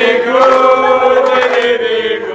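Voices singing a short jingle, holding one long chord that breaks off near the end.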